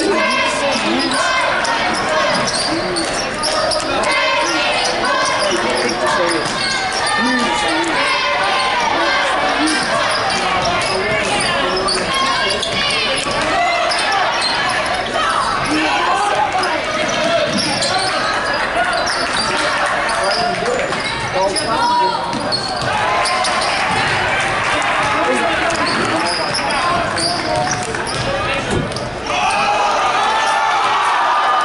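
Basketball dribbled on a hardwood gym floor during live play, with a steady murmur of spectators' voices, all echoing in the gymnasium.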